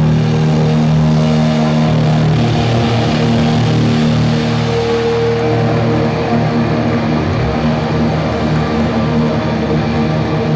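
Live hardcore punk band playing loud, with distorted electric guitars and bass holding long, steady ringing chords.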